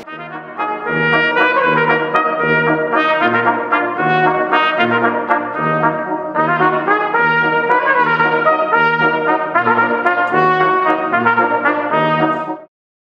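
Brass quintet of two trumpets, French horn, trombone and tuba playing together, sustained melody and harmony parts over a bass line of separate tuba notes about twice a second.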